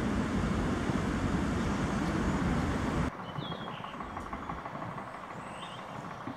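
Loud, steady outdoor rumble that cuts off abruptly about three seconds in, giving way to quieter background noise with two short high chirps.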